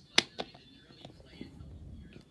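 Two sharp clicks of hard plastic, close together, as the clear canopy of a toy robot suit is pressed shut over the figure inside.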